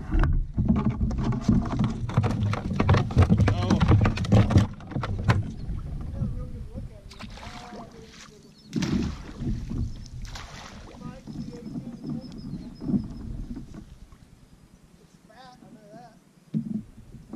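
Handling noise on a plastic fishing kayak: a busy run of knocks, rattles and rumble in the first five seconds, then scattered thumps and water sloshing as a landing net is swung and dipped. It all grows quieter toward the end.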